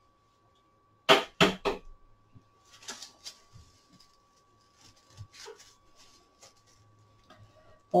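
Dry broomcorn straws being handled while the bundle is wrapped with twine: three sharp, crisp crackles about a second in, then faint, scattered rustling.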